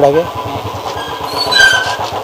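Motorcycle engine running as it passes close by, heard as a dense low pulsing. A short high-pitched tone sounds about one and a half seconds in.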